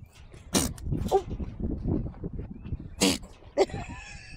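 Goat sneezing twice: two short, sharp bursts about two and a half seconds apart.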